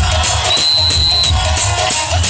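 Loud recorded music with a heavy, steady bass beat, a high held tone sounding for under a second near the middle.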